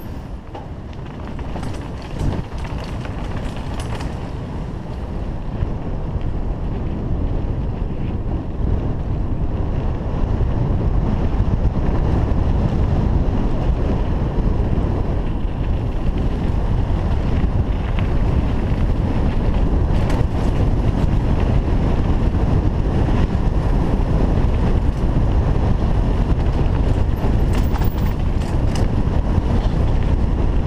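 Wind noise on the camera microphone during a mountain bike ride down dirt singletrack, with the bike rolling over the trail. It grows louder about a third of the way in, and a few sharp knocks come from bumps.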